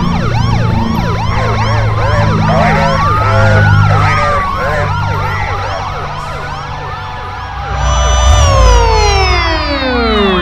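Several police sirens sounding at once, layered over each other: fast yelping cycles and slower rising-and-falling wails over a low steady drone. Near the end a stacked siren tone sweeps steeply down in pitch as it winds down.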